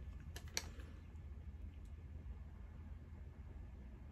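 Three quick, light clicks of small objects being handled in the first second, then only a low steady room hum.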